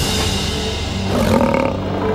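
Film score music playing, with a cartoon sabre-toothed cat's roar over it.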